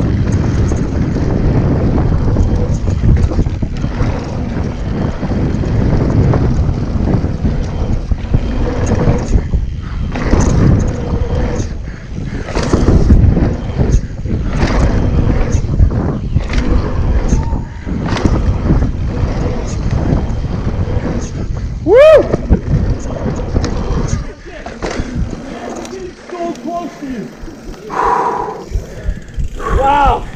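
Mountain bike ridden fast down a dirt jump trail, heard from a camera on the rider: wind rushing over the microphone, tyre noise on the dirt, and frequent rattling knocks from the bike over bumps and landings. Toward the end a short whine rises and falls, then the riding noise drops away as the bike slows.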